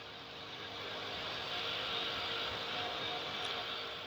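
Faint steady rushing noise that swells a little toward the middle and eases off near the end.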